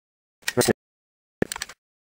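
Short metallic clicks and scrapes of a Mossberg 500 pump shotgun's forend being slid back onto the magazine tube during reassembly, in two brief bursts about a second apart.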